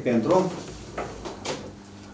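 A few words of speech, then two light, sharp knocks about a second and a second and a half in, in a small, quiet room.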